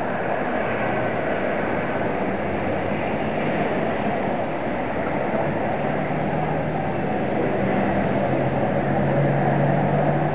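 Steady rushing background noise, with a low hum that grows stronger about six seconds in.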